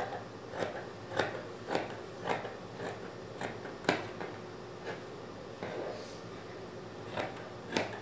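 Scissors cutting through thin knit fabric: a quick snip about every half second, growing sparser in the second half.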